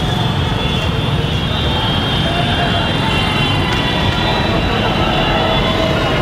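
Busy street traffic: motorbike and car engines running, with voices in the background.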